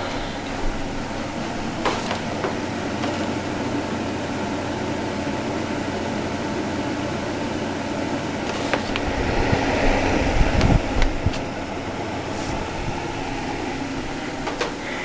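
Bionaire evaporative humidifier's fan running with a steady rush of air and a low hum. A few clicks and low thumps break in around two-thirds of the way through.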